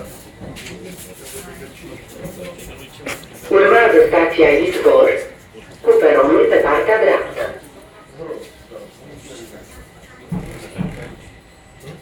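Speech: a voice says two loud phrases, starting about three and a half seconds in, over the steady running noise of a metro train car.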